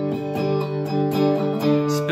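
Guitar strumming sustained chords in a steady rhythm, an instrumental gap between sung lines.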